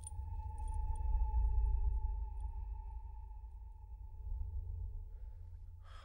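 Film soundtrack: a deep rumble swells under one steady high tone with faint overtones, held for about six seconds and stopping just before the end. A brief light metallic clink comes at the very start, as the Ring's chain is drawn out.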